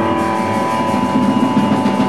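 Free-jazz quartet improvising: soprano saxophone, electric guitar, upright bass and drum kit playing together, with a high note held steadily from the start over busy drumming.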